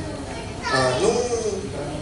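A person's voice: one short wordless sound under a second long, rising in pitch, near the middle.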